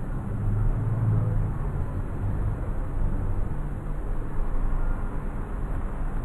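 Steady low background rumble with no speech, swelling into a louder low hum for about a second near the start.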